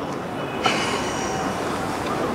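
Steady outdoor background noise with a faint high whine running through it and a brief click about two-thirds of a second in.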